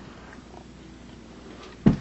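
Quiet room noise with a faint low rumble, then a single sharp thump near the end.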